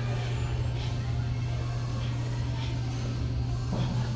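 Steady low hum of a large indoor hall, with a few faint soft thuds of feet landing on artificial turf.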